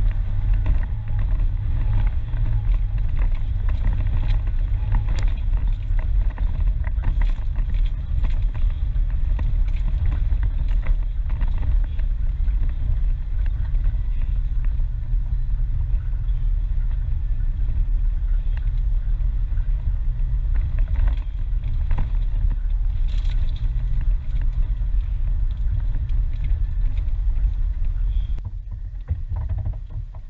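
Four-wheel drive climbing a rough, dry off-road track: a steady low engine and drivetrain rumble with scattered clicks and knocks. The rumble eases off near the end.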